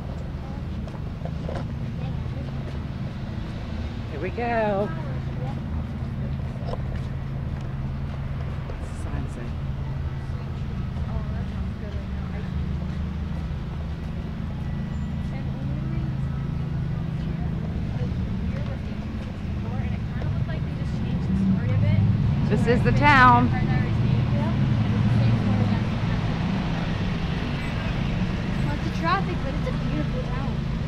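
Steady low rumble of road traffic, swelling for a few seconds just past twenty seconds in, with brief voices about four seconds in, around twenty-three seconds and near the end.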